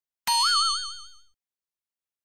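A cartoon 'boing' sound effect: a single springy tone that jumps up and wobbles in pitch, fading out within about a second.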